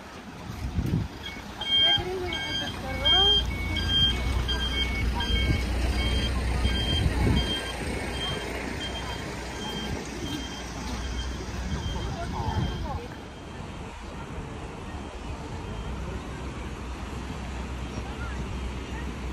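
A work vehicle's reversing alarm sounding a steady run of short beeps that fade out about eleven seconds in, over a low engine rumble.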